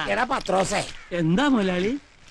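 A man's voice in drawn-out, wavering vocal sounds, with a short dip about a second in.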